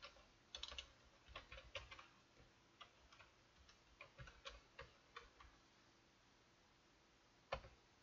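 Faint computer keyboard keystrokes: irregular taps over the first five seconds or so, then a pause and a single louder keystroke near the end as the typed command is entered.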